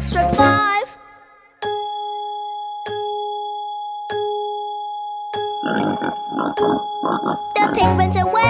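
A clock striking five: five ringing bell strokes, evenly spaced about a second and a quarter apart, each ringing on until the next. Brief singing comes before the first stroke, and a short rattle follows the last, with singing again near the end.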